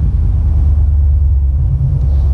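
OBS pickup truck's engine and exhaust heard from inside the cab while cruising, a steady, deep low rumble with no rise or fall in revs.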